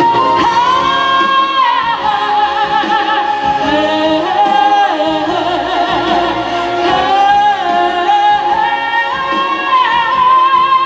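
Woman singing a Vietnamese ballad live through a handheld microphone, holding long high notes with vibrato, two of them pushed high near the start and near the end.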